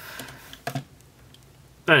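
Light clicks and taps of hard plastic as hands handle a vintage Transformers G1 Headmaster Hardhead toy robot, with a brief vocal sound about two-thirds of a second in.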